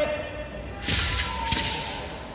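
Two sharp swishing snaps about two-thirds of a second apart, from a wushu performer's handheld weapon whipped through the air during a competition routine.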